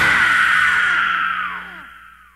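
A thrash metal band's last note rings out after the band cuts off. A held tone slides slowly down in pitch among falling glides, then fades away about a second and a half in.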